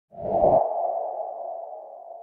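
Intro sound effect for a logo reveal: a short low hit with a ringing, sonar-like tone that is loudest about half a second in and then slowly fades away.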